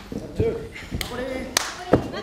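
Sharp slaps of wrestling strikes landing on bare skin, three of them at uneven intervals (about a second in, about half a second later, and near the end), with short shouts between them.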